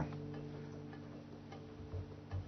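Faint background music: a low chord of several steady tones held through a pause in speech.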